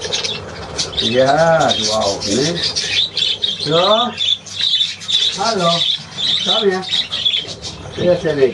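A roomful of budgerigars chattering and chirping continuously. Over it, a man's voice makes about five drawn-out wordless sounds that rise and fall in pitch.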